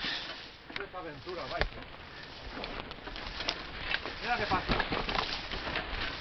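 Footsteps crunching and rustling through dry leaf litter and undergrowth as a mountain bike is walked up a steep trail, with a few sharp clicks and knocks scattered through.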